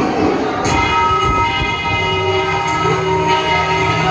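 A recorded soundtrack played over loudspeakers: a chord of several steady held tones over a rumbling noise, coming in about half a second in and holding.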